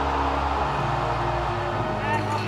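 Music sting for a broadcast graphics transition: sustained synth chords held steady over an even, rushing noise wash.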